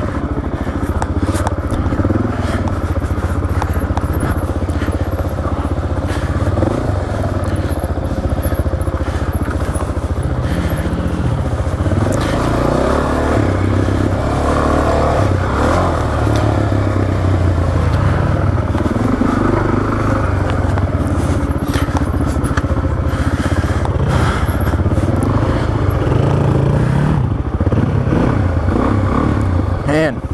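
Suzuki DR-Z400S single-cylinder four-stroke engine running under way, its revs rising and falling with the throttle as the bike climbs a rocky trail. Scattered scrapes, clicks and knocks from the bike going over rocks.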